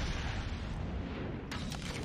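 Film soundtrack of a huge house explosion: a long, deep blast that carries on and slowly eases, with crackles of debris starting about a second and a half in.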